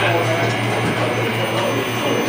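Steady low hum from live-band stage amplifiers under the noise of a bar crowd, with no playing yet.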